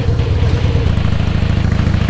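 Harley-Davidson Heritage Softail Classic's V-twin engine running steadily while riding at low speed, its deep, pulsing exhaust note the loudest sound.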